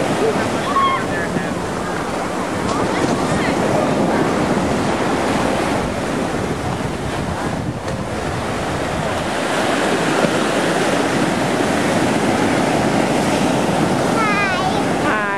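Ocean surf breaking and washing up the shore in a steady rush, with wind buffeting the microphone.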